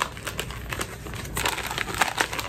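A Mountain House freeze-dried food pouch crinkling and crackling as it is handled, a run of quick, irregular crackles.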